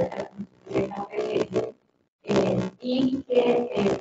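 A person speaking into a handheld microphone in short phrases, with a brief pause about halfway through.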